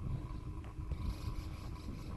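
Wind buffeting a moving camera's microphone as a steady low rumble, under a faint steady hum. A brief hiss comes in about halfway through.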